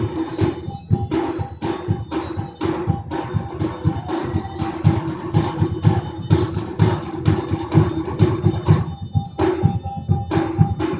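Live traditional percussion music accompanying silat: drums and struck gong-chimes playing a quick, steady rhythm of several strikes a second, with ringing pitched tones held under the beat.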